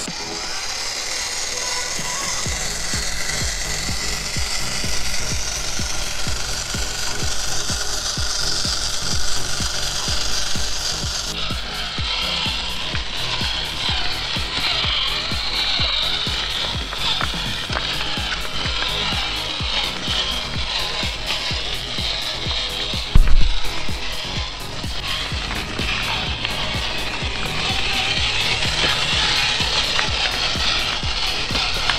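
A 1/18-scale RC crawler's small motor and geartrain whirring as it crawls over loose river rocks, tyres crunching on stones, under background music. One loud thump about three-quarters of the way through.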